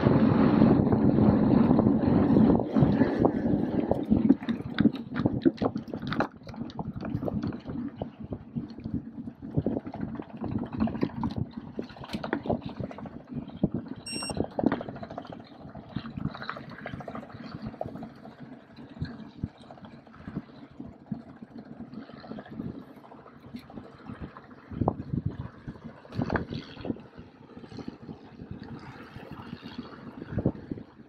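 Wind buffeting the camera microphone and tyre noise at speed for the first few seconds, then a mountain bike rolling more quietly over wet, bumpy grass and dirt, with frequent rattles and clicks from the bike. A short high beep sounds once, about halfway through.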